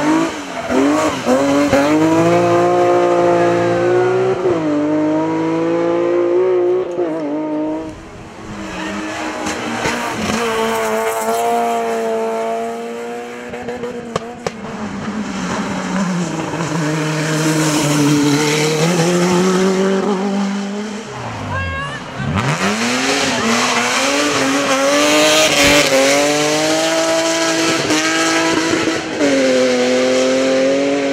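Hillclimb race cars, one after another, accelerating hard up a mountain road. Each engine's pitch climbs as it revs out and drops back at each gear change.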